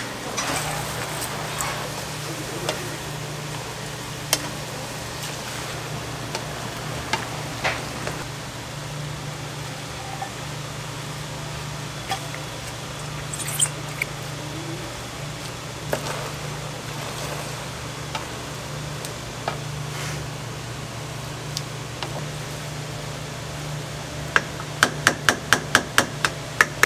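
Japchae of glass noodles and vegetables sizzling as it is stir-fried in a frying pan, with a wooden spatula knocking and scraping against the pan now and then. A steady low hum runs underneath, and near the end comes a quick run of sharp taps.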